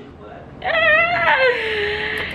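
A woman's long, high-pitched wordless whine, starting about half a second in and sliding slowly down in pitch: a weary, exasperated moan.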